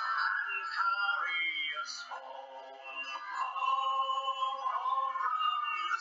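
A song: a sung voice holding long, drawn-out notes over instrumental backing.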